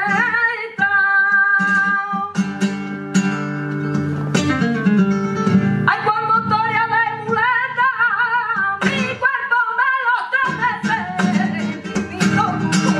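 Flamenco bulerías: a woman singing ornate, wavering cante phrases to flamenco guitar. Her voice drops out from about two to six seconds in for a passage of strummed guitar chords, then comes back in over the guitar.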